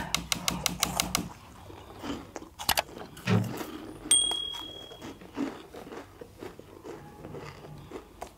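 Chopsticks clicking against steel plates and chewing, with a rapid run of clicks in the first second and a few more later. About four seconds in, a short high electronic chime rings briefly.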